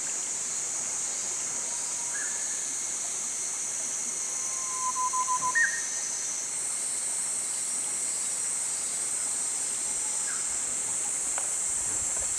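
Steady high-pitched hiss of outdoor ambience, with a few short calls from small animals or birds: one about two seconds in, a quick run of about six notes halfway through followed by a louder single call, and another near the end, plus one sharp click shortly before the end.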